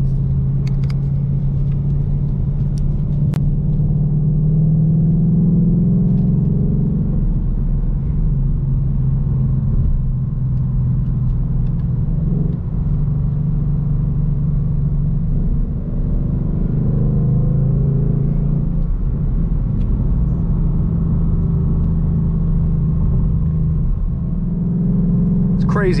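Ford Mustang's stock exhaust in track mode, heard from inside the cabin while cruising: a steady low drone that rises a little in pitch a few seconds in and dips briefly a few times in the middle.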